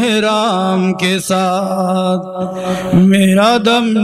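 A man singing an unaccompanied Urdu munajat (a devotional hymn to God), drawing out long, ornamented held notes with a brief break near the middle.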